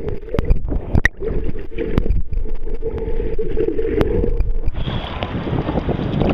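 Water heard with the microphone submerged: a muffled rushing slosh with many sharp clicks and knocks. About five seconds in, the microphone breaks the surface and the sound opens up into the brighter wash of small waves.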